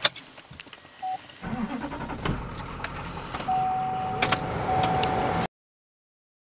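Keys jangle in the ignition, then a truck's engine cranks and starts about a second and a half in and settles into a steady idle, heard inside the cab. A steady tone sounds twice near the end, and the sound cuts off suddenly just before the end.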